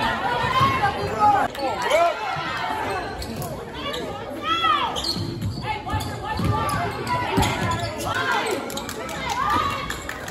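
Basketball game on a hardwood gym floor: the ball bouncing and sneakers squeaking in short sharp chirps as players run the court, over spectators' voices echoing in the gym.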